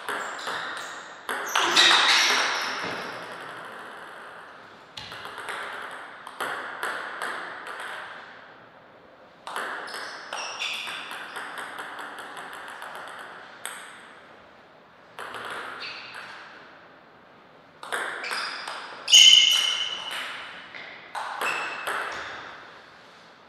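Table tennis rallies: the ball clicking off the paddles and bouncing on the table in quick runs of hits. Several short rallies come a few seconds apart, with the hits echoing in a large hall.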